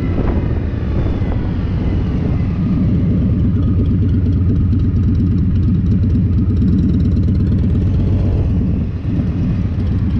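A motorcycle engine running steadily, a dense low rumble that grows slightly louder about three seconds in and dips briefly near the end.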